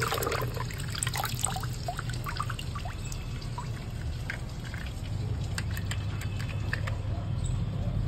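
Small plastic toy tractor being swished in a plastic tub of water and lifted out, with light splashing and then water dripping and trickling back into the tub, over a low steady hum.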